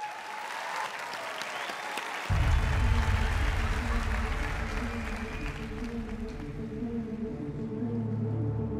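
Studio audience applauding, fading over the first few seconds, as a low, sustained music track with a heavy bass cuts in suddenly about two seconds in and keeps going.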